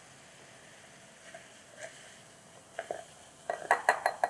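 Stainless steel measuring cup tapping against the rim of a drinking glass as baking soda is knocked into vinegar: quiet at first, a few light taps near the end, then a quick run of ringing clinks.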